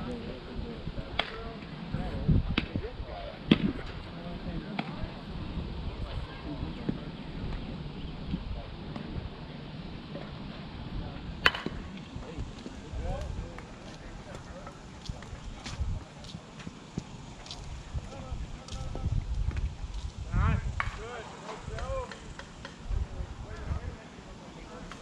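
Outdoor softball-field ambience: distant voices of players, a low fluctuating rumble of wind on the microphone, and scattered sharp clicks. The loudest is a single crack about halfway through.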